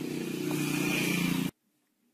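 A motor vehicle engine running steadily and getting slightly louder, over outdoor noise, cut off abruptly about one and a half seconds in, followed by near silence.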